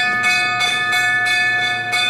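A metal bell rung repeatedly, about three or four strokes a second, its clear high tones ringing on between strokes. It starts suddenly and loudly.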